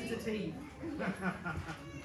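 A person's voice, its pitch sliding up and down from sound to sound.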